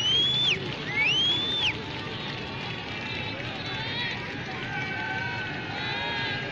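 Background crowd noise around a floodlit cricket ground. In the first two seconds there are three high whistle-like tones, each sliding up, holding briefly, then dropping off. Faint distant voices follow.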